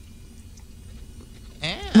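A short pause with a faint studio background, then about a second and a half in, a person's voice says a drawn-out 'ew' whose pitch rises and falls.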